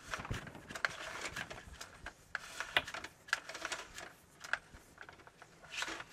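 Irregular clicking and scraping of an inspection camera's push cable being fed by hand into a drain line.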